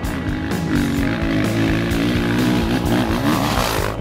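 Honda CRF450X dirt bike's single-cylinder engine running, its pitch wavering up and down with the throttle, over background music. A rushing noise builds toward the end.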